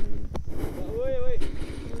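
People's voices talking, not clear enough to make out, over a steady low rumble, with one short click about a third of a second in.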